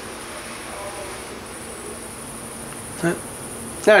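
Crickets chirring in a steady, high-pitched trill that carries on unbroken.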